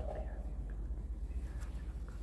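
Room tone with a steady low rumble, a brief soft sound right at the start and a few faint ticks.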